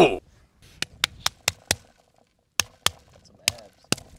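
A run of sharp, light taps: five in quick succession about a second in, then four more spaced out, the last just as a hand rests on the ballistic gel torso's shoulder.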